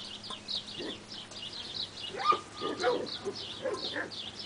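Animal calls: short high chirps repeating a few times a second, with a louder pitched call holding one note for about half a second near the middle.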